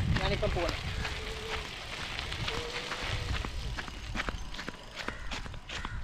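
Bicycle tyres rolling over a grit-covered dirt yard, with scattered crunches and clicks that come thicker in the second half, a low rumble, and a faint steady hum twice. A short bit of voice is heard at the very start.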